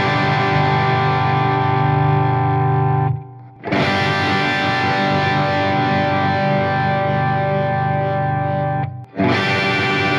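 Overdriven electric guitar through a Marshall JCM800 2203 amp: a G chord strummed on the bridge humbucker and left to ring for several seconds, muted, then struck again about four seconds in and once more near the end. The chords alternate between a bolt-on maple-neck PRS CE24 and a set-neck mahogany PRS Custom 24 fitted with the same pickups.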